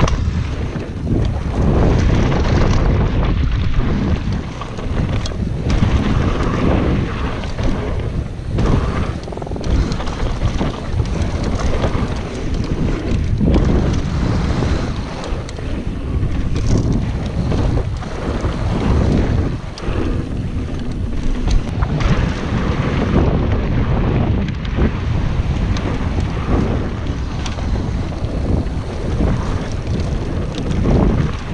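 Wind buffeting an action camera's microphone on a mountain bike descending a dirt singletrack, a rumbling rush with the tyres running over dirt and short knocks from the bike over bumps.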